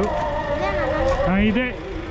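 People's voices talking, with road traffic running underneath.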